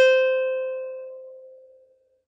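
A single note picked on a ukulele's A string, ringing and fading away over about two seconds.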